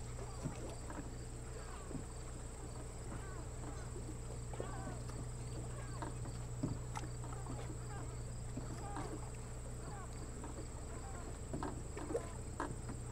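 Outdoor ambience: a steady low hum with many faint short chirps and clicks scattered throughout.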